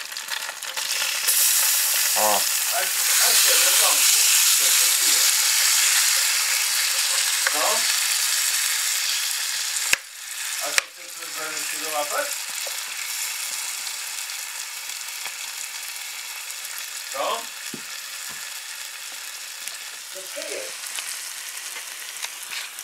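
A cutlet frying in a pan: a steady, dense sizzle, loudest in the first half, that drops somewhat after two sharp clicks about ten seconds in.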